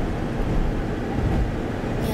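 Steady road noise inside a moving car's cabin: a low rumble of tyres and engine on a wet, slushy highway.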